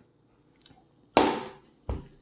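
A sudden loud burst of breath about a second in, a laughing exhale close to a clip-on microphone that fades over half a second, then a short dull thump near the end as the can is set down on the wooden table.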